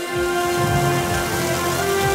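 Food sizzling on a hot flat-top grill, with background music of held notes and a bass line underneath.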